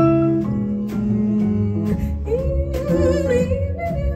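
Live jazz quartet playing a slow blues: piano, upright bass and drums behind a female singer, who holds a long note with vibrato through the second half.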